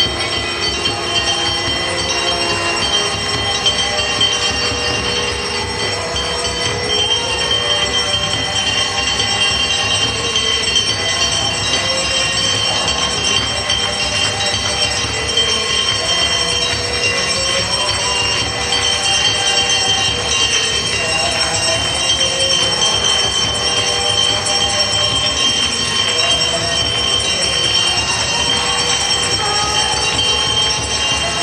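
Temple bells ringing continuously during an aarti, a dense steady metallic ringing with high sustained tones.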